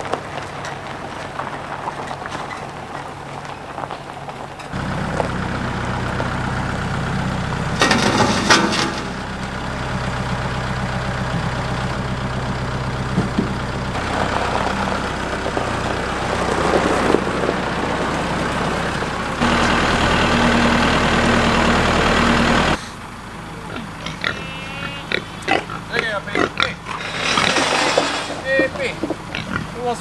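Kubota compact tractor's engine running steadily, getting louder for a few seconds and then stopping suddenly, with a short clatter about eight seconds in. After it stops, pigs grunt and squeal.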